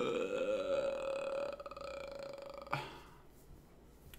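A man's long, drawn-out groan of longing, held on one vowel for nearly three seconds and trailing off. A short click follows it.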